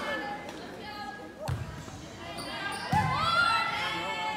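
A volleyball struck twice, two sharp smacks about a second and a half apart with echo from a large gym, the first a serve. Voices call out right after the second hit.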